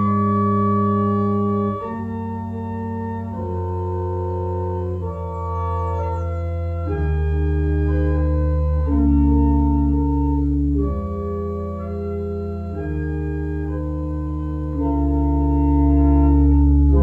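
Church organ playing slow, sustained chords over a held bass line, the chords changing every second or two.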